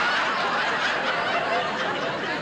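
Studio audience laughing at a punchline, a dense wash of many voices that gradually dies down.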